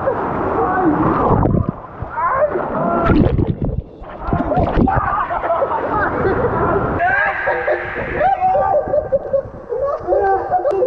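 Water rushing and splashing down a water slide as riders slide through it, with wordless shouts and voices over the splashing.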